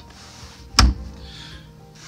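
A single sharp clunk a little under a second in, from the tilt-steering mechanism at a small aluminium boat's helm as the wheel is moved, with soft rubbing before and after it. Quiet background music runs underneath.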